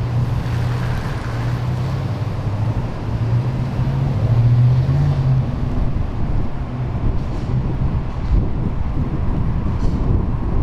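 Engines of a motorcade of black Chevrolet Suburban SUVs driving past, a steady low drone that grows loudest about four to five seconds in.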